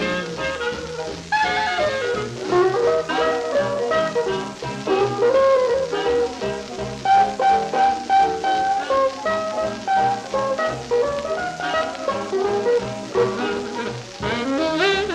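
Small-group swing jazz from a 1943 recording, played back from a 78 rpm shellac record on a turntable: horns play melodic lines over a rhythm section.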